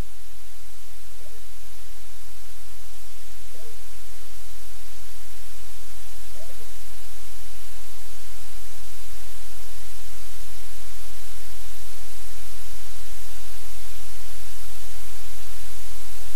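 Steady loud static hiss with a strong low hum beneath it, slowly growing louder; electrical noise on the audio feed, with a few faint short chirps at first.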